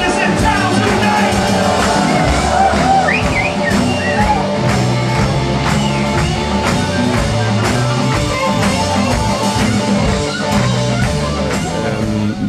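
Blues-rock band playing live: electric guitars, bass guitar and a drum kit keeping a steady beat, with a man singing.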